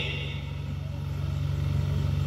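A steady low hum with no speech over it.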